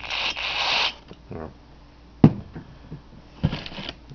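Short burst of solvent sprayed from an aerosol can, a hiss lasting just under a second, onto the sensor's connector pins to clean dirt off them. A sharp click about two seconds in, then a click and a second, shorter hiss near the end.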